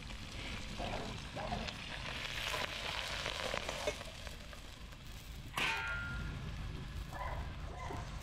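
Shrimp sizzling hot from a frying pan over a wood fire as they are tipped into a steel bowl. A sharp metallic clang with a short ring comes a little past halfway.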